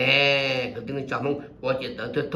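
A man talking, opening with a loud drawn-out vowel held for under a second that rises slightly and falls, then carrying on speaking.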